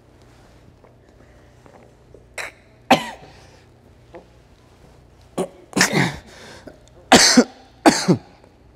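A man coughing and clearing his throat in a run of short loud coughs, right after gulping a vial of fizzy soda. The coughs begin about two and a half seconds in and come in quick pairs, louder near the end.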